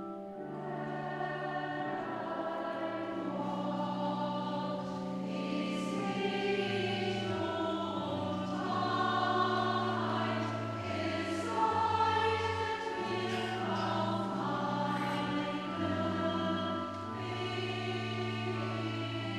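Mixed church choir of men's and women's voices singing a sacred piece in parts, over a pipe organ holding long, steady bass notes that change step by step.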